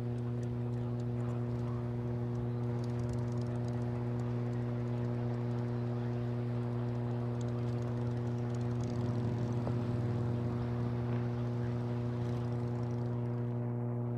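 A steady low electrical hum with a stack of even overtones on the broadcast audio, over a faint hiss that swells a little about nine seconds in.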